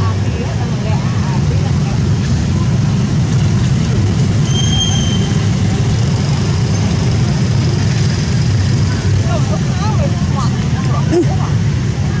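Steady low outdoor rumble, with a brief high whistle-like tone about five seconds in and a few faint calls near the end.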